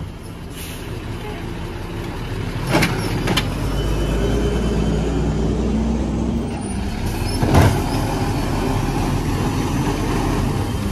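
Mack LE refuse truck's liquefied-natural-gas engine running and rising in revs for a few seconds while its Amrep Octo automated side-loader arm works the carts. Sharp knocks come at about three seconds and, loudest, near eight seconds.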